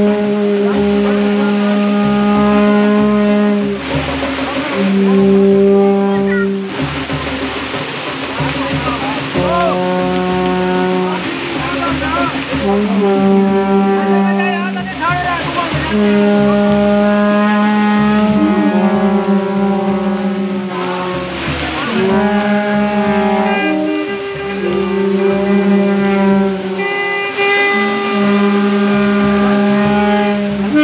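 Wind instruments playing long held notes, each about two to four seconds with short breaks, stepping between a few pitches, over the voices of a crowd.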